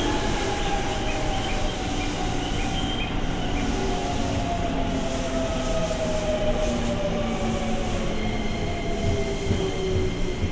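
JR East 205 series electric train running past with rolling wheel noise and a whine that falls slowly in pitch as the train slows.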